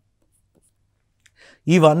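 Near silence, then a faint, brief scratch of a pen on a writing tablet a little over a second in, just before a man starts speaking.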